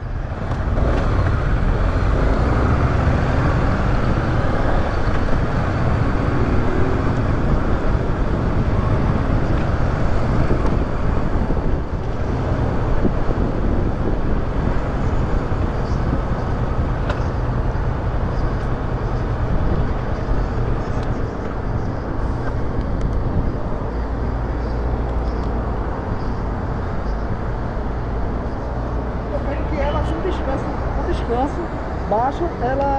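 Motorcycle engine running with steady wind and road noise on the bike-mounted camera's microphone, the Kawasaki Versys 650 parallel twin carrying the camera; the noise eases a little about twelve seconds in.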